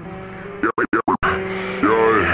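Intro of a slowed-down rap track: held synth tones that are chopped into a rapid stutter about halfway through, then a pitch-bending vocal sample near the end.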